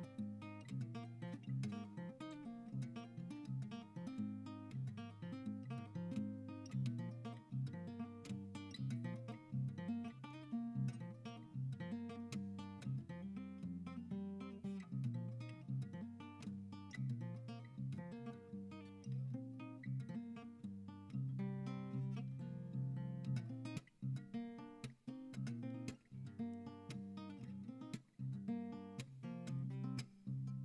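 Tanglewood TSF-CE Evolution acoustic guitar, capoed, playing an instrumental piece. A continuous run of picked notes over a bass line, with a few brief breaks between phrases in the last third.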